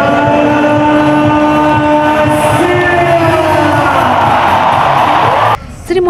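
Loud stadium music with a steady low pulsing beat and held chords, over a large crowd cheering. The cheering swells in the second half, then everything cuts off abruptly near the end.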